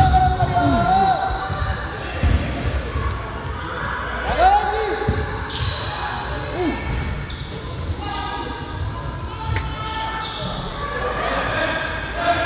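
Youth basketball game on a hardwood gym floor: the ball bouncing with scattered thumps, short squeaks from sneakers, and players' and coaches' voices calling out, all echoing in a large hall.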